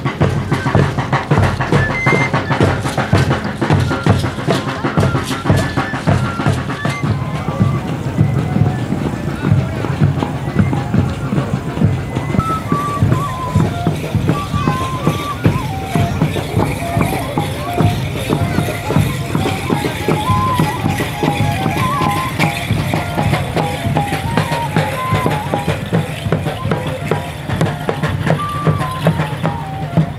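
Live Moxeño festival procession music: drums beaten in a steady rhythm under a high, wandering melody line, with crowd voices mixed in.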